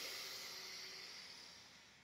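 A woman's deep inhale through the nose, a soft hiss that fades gradually over about two seconds.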